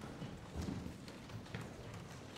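Uneven soft knocks and thumps, about five in two seconds, like footsteps on a hard floor, over a faint room hum.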